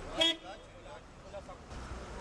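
A single short car horn toot about a quarter second in, over the murmur of voices and street noise.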